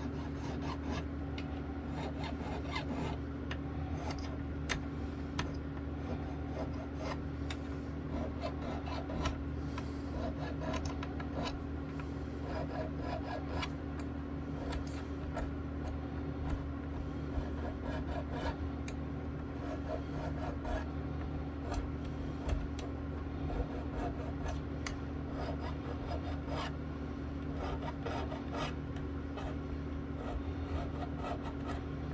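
A small file is worked in a run of short, irregular strokes across the steel fret ends of an Ibanez SR305EDX five-string bass, dressing down fret ends that stick out sharp at the fingerboard edge. A steady low hum runs underneath.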